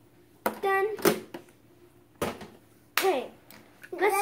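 A young child's voice makes two short wordless sounds, one about half a second in and one about three seconds in. Between them come two sharp knocks.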